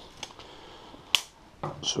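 A single sharp click a little past a second in, with a fainter tick before it, as a steel tape measure is handled and put down; otherwise quiet room tone.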